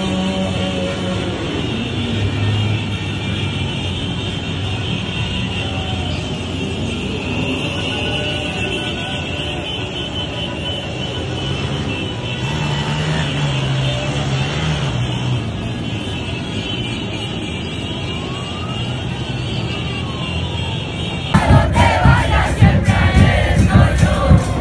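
Street full of motorcycles and cars in a celebratory motorcade: a steady mix of engines and crowd shouting. About 21 seconds in it cuts sharply to louder music with drums.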